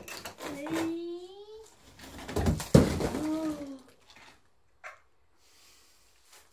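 Knocks on brickwork, then a loud crash of a chunk of brick and mortar coming down about two and a half seconds in. Wordless exclaiming voices come before and after the crash.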